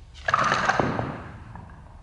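Barbell loaded with bumper plates clattering and clanking as it is snatched overhead and caught. The sudden burst of knocks and ringing starts about a quarter second in and dies away within about a second.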